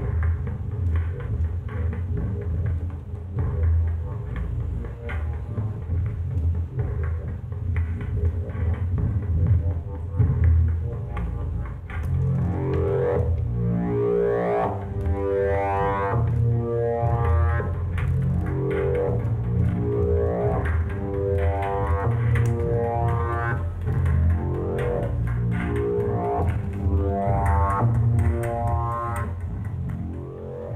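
Make Noise Eurorack modular synthesizer playing a patch of the DPO analog oscillator and the Phonogene granular looper run through the Echophon pitch-shifting echo. It holds a steady low drone, and from about twelve seconds in, stepped rising glides repeat every second and a half or so.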